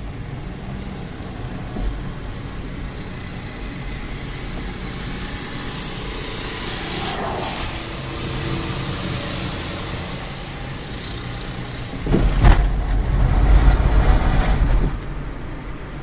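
Car cabin noise while driving slowly: a steady low engine hum with road hiss. About three-quarters of the way through, a louder low rumble comes in and lasts a few seconds.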